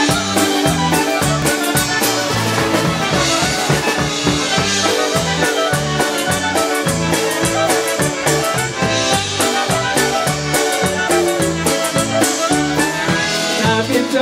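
A live polka band playing an instrumental passage: two clarinets carrying the melody over a Chemnitzer-style concertina, electric keyboard, guitar and drum kit, with a steady bouncing beat in the bass.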